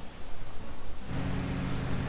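Quiet outdoor background noise. About a second in, a steady low hum comes in and holds.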